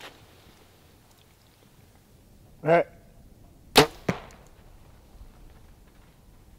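Compound bow shot: a short pitched call a little before the middle, then a sharp crack of the bowstring's release, followed a moment later by a second, fainter crack as the arrow strikes.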